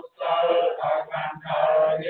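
Buddhist monks chanting in unison through microphones, a steady run of short sung syllables with brief breaks between phrases.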